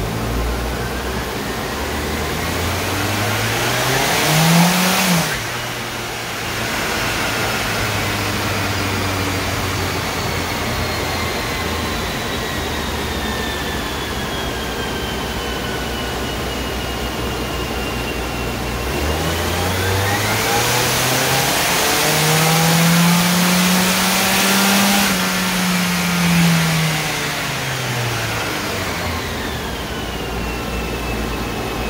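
Turbocharged Volvo engine on a chassis dyno. It revs up and cuts off sharply about five seconds in, runs steadily, then makes a long full-throttle pull that climbs, holds near the top for a few seconds and winds back down near the end. The pull is a boost test with a manual boost controller set for about 14 psi. A large cooling fan runs steadily underneath.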